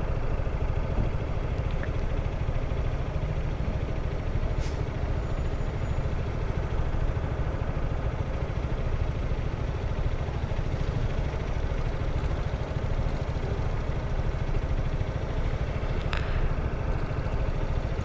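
Zontes 350E scooter's single-cylinder engine idling steadily at a standstill, with two faint brief ticks, one a few seconds in and one near the end.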